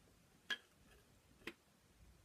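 Two sharp clicks about a second apart, the first louder, against a very quiet room.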